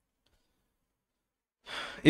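Near silence, then about a second and a half in, a man's short audible breath just before he speaks again.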